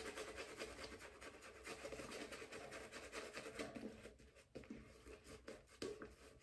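A 24 mm silvertip badger shaving brush working shaving soap into a lather on a three-day stubble: a faint, quick scratchy swishing that thins to a few separate strokes near the end. This is face lathering, with water just added to a lather that was still too dry.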